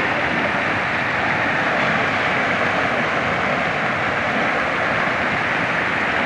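Steady rushing noise of fast-flowing floodwater: a river in spate, spreading over its banks.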